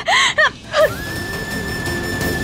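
A woman sobbing, with a few short, gasping cries in the first second. Background music then holds a long, steady high note.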